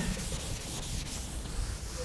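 Chalk scraping and tapping on a blackboard as equations are written, with a short knock right at the start.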